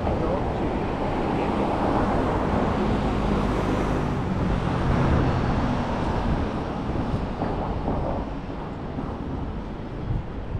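City street traffic: a car passing on the road, the noise strongest through the first six seconds and then easing off.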